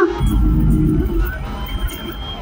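Live concert sound through a PA: heavy bass and crowd noise just after a held sung note cuts off, fading over the two seconds.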